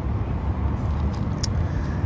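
Steady low rumble of road traffic, with a faint click about a second and a half in.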